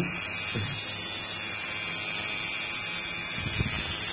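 Electric tattoo machine buzzing steadily as the needle works ink into skin, with a rougher, lower sound joining in near the end.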